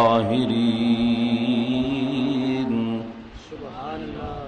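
A man chanting an Arabic invocation in a melodic recitation style into microphones, holding one long note that ends a little under three seconds in and trails off.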